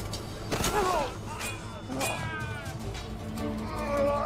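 Television drama score with a sliding, wailing melody line, mixed with fight sound effects: sharp impacts about half a second in and again around two seconds in.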